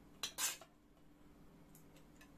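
Spoons and forks clinking against plates while people eat: two quick clinks close together near the start, the second louder, then a faint tick later on.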